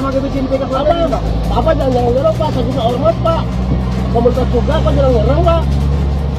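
Men's raised voices in a heated argument, with a steady low engine hum underneath from the idling truck.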